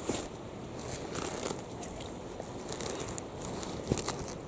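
Wind buffeting the camera microphone as a steady rushing noise, with faint rustling and a sharp handling click at the start and again near the end.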